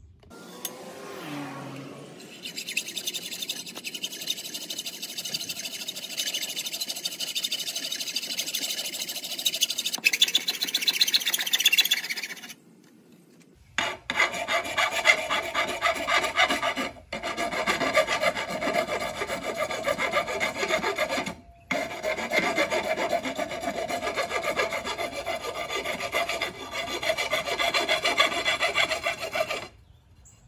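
Hacksaw blade cutting through a magnesium water-heater anode rod: rapid back-and-forth sawing strokes in several long runs with brief pauses between them.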